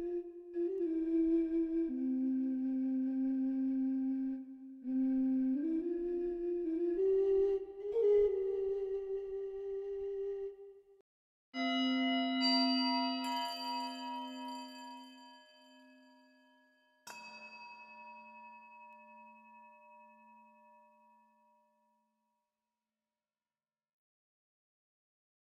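A sampled flute plays a slow melody with bending notes for about ten seconds. After a short gap come two struck singing-bowl tones about five seconds apart, each ringing out and fading away.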